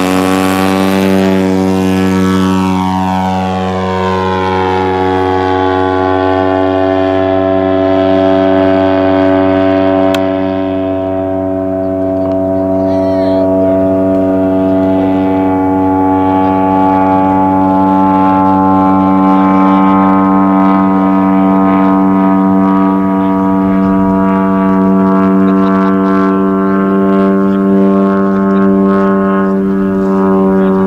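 A radio-controlled model tow plane's engine held at full throttle, a loud, steady drone, as it takes off and climbs while towing a glider. Its tone shifts over the first several seconds as it climbs away, then holds steady.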